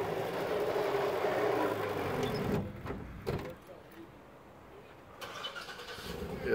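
A motor running steadily for about two and a half seconds, then cutting off, followed by a single knock a little later.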